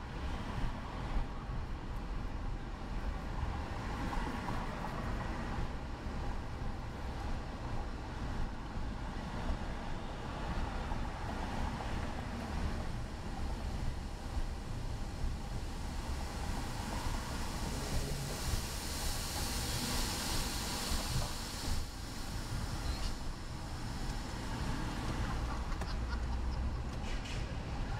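Road and engine noise heard from inside a car's cabin as it drives slowly through city traffic: a steady low rumble with a hiss. A louder hiss swells for a few seconds about three quarters of the way through.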